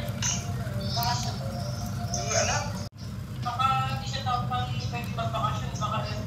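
People's voices talking over a steady low hum, with the sound cutting out abruptly for a moment about halfway through.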